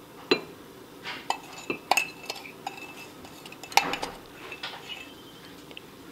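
Metal spoon clinking against a glass jar in irregular, scattered taps while stirring Epsom salt into hot water to dissolve it.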